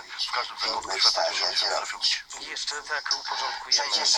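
Speech only: talk-radio voices played back through a small portable speaker.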